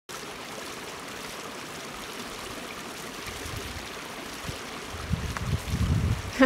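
Steady rushing of a mountain stream, with low rumbles coming and going in the last seconds.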